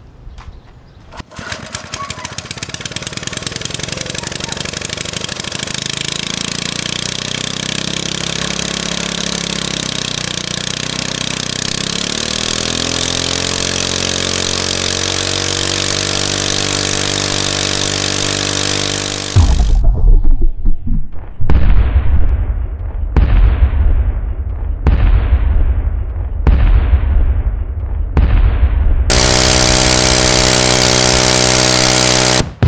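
Single-cylinder Briggs & Stratton engine with a clear plexiglass head, running on nitromethane with its carburettor needle opened almost all the way. It starts, runs with its speed wandering, then picks up to a steady fast run. About two-thirds through, the sound changes suddenly to a heavy low pulsing broken by a sharp crack about every second and a half.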